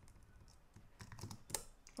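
Typing on a computer keyboard: a few faint, scattered keystrokes, then a quick cluster of louder ones past the middle.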